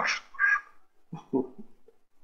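A man laughing in short, breathy bursts, then a single short spoken word.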